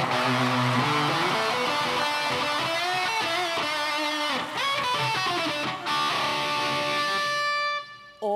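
Electric guitar played solo: a quick run of notes that settles into one long held note near the end.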